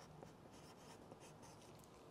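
Near silence, with the faint scratch of a hand writing a number on a paper sheet.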